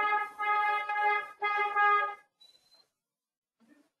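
A horn sounding one steady note in two long blasts, about two seconds in all, with a short break between them, then stopping.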